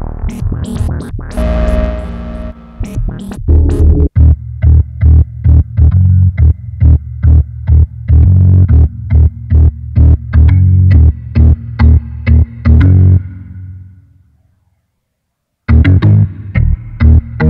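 Yamaha Montage M6 synthesizer playing: a pulsing pattern of short, bass-heavy notes, about two a second, after a busier opening few seconds. The pattern fades out near the end, a moment of silence follows, and a new sound starts right at the end.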